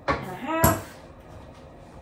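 A short spoken word with a sharp tap at its start and another, sharper one just after it: a measuring spoon knocking against a blender jar as salt is tipped in.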